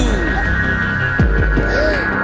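Electronic sound effect of the kind used for a power cut: a low steady hum with a falling pitch glide at the start and another about a second in, over a faint high steady tone.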